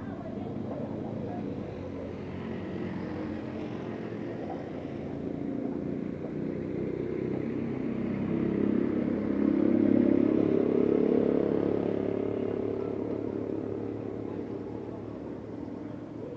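A motor vehicle passing along the road: its engine grows louder, peaks about ten seconds in, then fades away.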